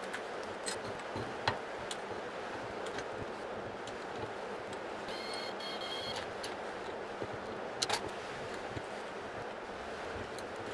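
Cheap rotary welding positioner running on its newly fitted 15 RPM geared motor, a steady mechanical hum, with a few light clicks and a short high-pitched whine about five seconds in.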